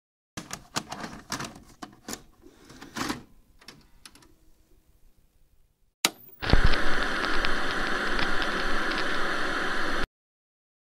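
A run of irregular clacks that grow fainter over about five seconds, then a sharp click and loud, steady analog-video static hiss with crackles, which cuts off suddenly at the end.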